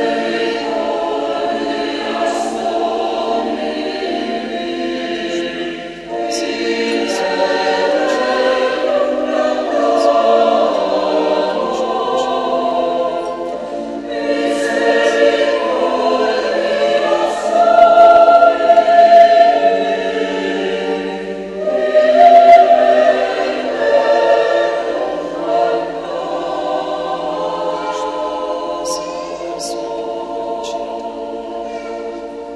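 Mixed church choir of men and women singing a hymn in a large, reverberant church, the offertory chant during the preparation of the gifts at Mass. The singing is sustained and swells louder twice in the second half.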